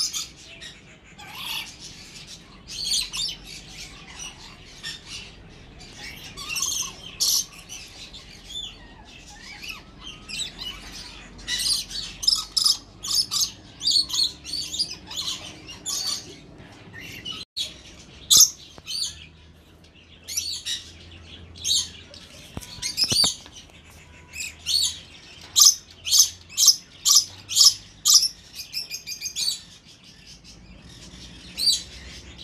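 Many caged budgerigars chirping without pause, with a run of loud, evenly spaced calls, about two a second, near the end.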